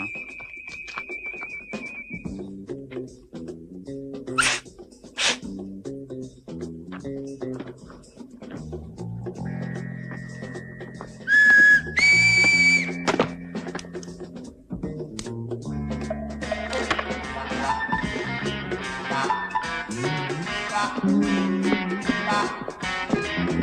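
A man whistling a signal: one held, slightly warbling whistle at the start, then two short sharp whistles about four and five seconds in, over a light background music score of plucked notes. Around twelve seconds a brief, loud, high whistle-like tone is the loudest sound.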